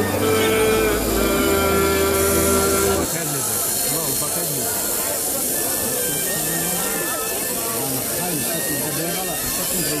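Music with long held notes that breaks off about three seconds in, giving way to the busy chatter of a crowd of voices talking over one another.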